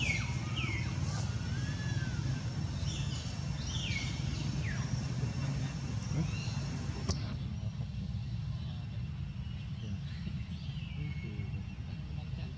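Steady low rumble with short, high, sliding chirp-like animal calls scattered through it, and one sharp click about seven seconds in.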